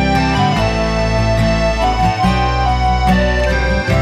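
Instrumental break in an acoustic folk song: accordion playing held melody notes over strummed acoustic guitar and a bass line.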